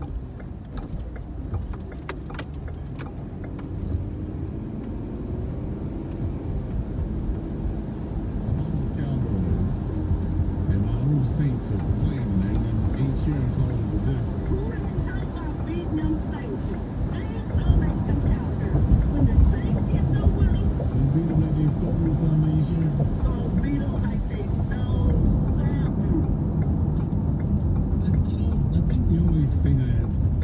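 Car cabin noise while driving on a wet road: a steady low rumble with tyre hiss. A car radio plays talk and music underneath, growing louder partway through.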